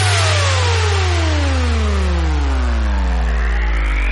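Hard dance track breakdown with no beat: a sustained deep bass drone under a hissing noise wash, with synth sweeps repeatedly falling in pitch.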